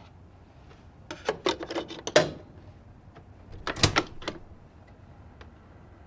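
Plastic clicks and knocks of a Panda portable CD player being handled: its lid shut and its buttons pressed. They come in two bunches, about a second in and about four seconds in, with one more single click near the end.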